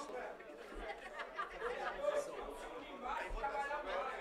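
Faint chatter of several voices away from the microphone, in a large hall.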